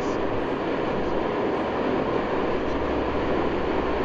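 Steady road and engine noise inside a car cabin while driving at highway speed, with a low rumble underneath.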